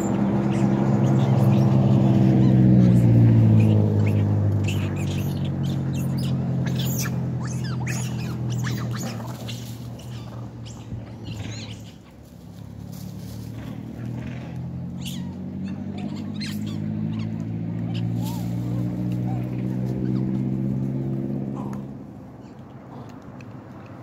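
A motor vehicle's engine passing close, loudest a few seconds in with its pitch falling as it goes by, then fading; a second vehicle approaches, growing louder with its pitch rising, and cuts off near the end. Short sharp high chirps or clicks come and go in between.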